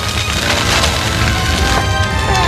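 Cartoon sound effects of dense crackling and popping over a low rumble, with background music underneath.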